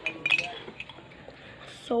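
Metal spoon clinking against a bowl: a quick cluster of a few ringing clinks about a quarter second in.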